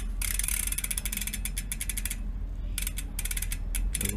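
Freehub body of a Mavic Deetraks rear hub turned by hand, its pawls clicking rapidly: a run of about two seconds, a brief pause, then clicking again. The freehub body is gouged and worn, with play that the owner suspects comes from busted bearings.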